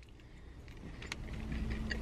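A man chewing a bite of crispy chicken tender, with a few faint mouth clicks, over a low steady rumble inside a car's cabin. A faint steady hum joins about a second in.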